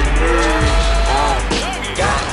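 Hip-hop backing music: a heavy bass beat with bending, gliding synth tones that rise and fall.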